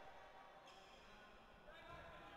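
Near silence: faint sports-hall room tone.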